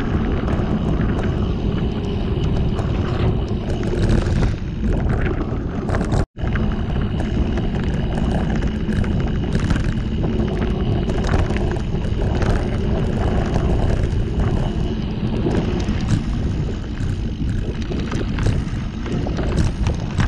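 Mountain bike riding over a loose dirt and gravel track, heard from a camera mounted on the bike: a continuous rush of wind on the microphone and knobby tyres rolling over stones, with frequent rattles and clicks from the bike. The sound drops out completely for a split second about six seconds in.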